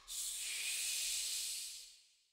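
A steady high hiss with no pitch or rhythm, which fades away near the end.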